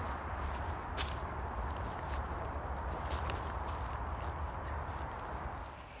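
Footsteps pushing through dense, dry undergrowth: steady rustling of brambles and dead vegetation with scattered sharp snaps of twigs, over a constant low rumble.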